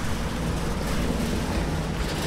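A truck driving past on the street, towing a trailer loaded with a small excavator: a steady low engine rumble with a faint held drone.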